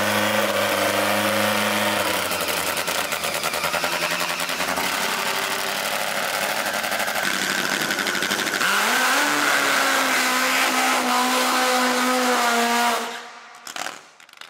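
Nitro-burning Top Fuel drag motorcycle engine running loud, first at a steady note, then firing roughly, then rising in pitch about nine seconds in and holding there. It cuts off suddenly near the end.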